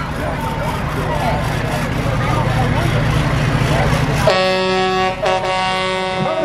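A truck's engine rumbling as it rolls past, then about four seconds in the truck's horn sounds in two blasts with a brief break between.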